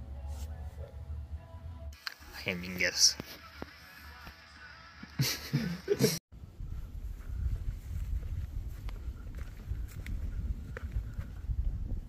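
People's voices: brief laughter and a few words a couple of seconds in. After a sudden cut past the middle, a steady low rumble with no voices follows.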